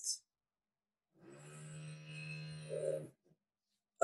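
A faint, drawn-out vocal sound, like a held hesitation "euh", at one steady pitch for about two seconds starting just over a second in. The rest is near silence.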